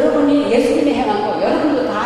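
Speech only: a woman interpreting into Korean, speaking into a handheld microphone.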